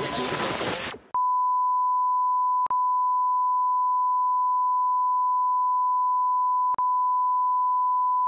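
A second of loud, hiss-like noise cuts off abruptly. Then a steady electronic beep at one fixed pitch, like a test tone, sounds on and on, broken by two brief clicks.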